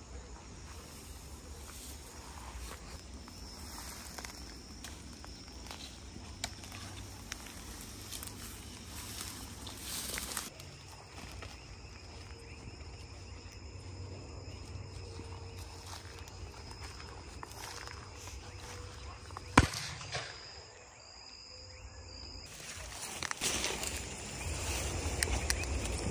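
Insects chirping steadily in the background while footsteps rustle through tall grass. A single sharp knock, the loudest sound, comes about twenty seconds in.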